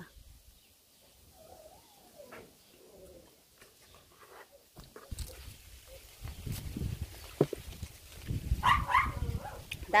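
Cherry-tree branches being reached into and pulled down, with the phone rubbing and bumping in the hand: irregular low thuds and rustles from about halfway through. Earlier, faint wavering animal calls sound in the distance, and a short vocal sound from the picker comes near the end.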